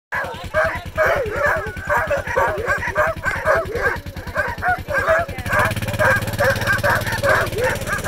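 A yard of sled dogs (huskies) barking and yipping excitedly all at once, many overlapping high calls with no break, as a harnessed team waits to pull.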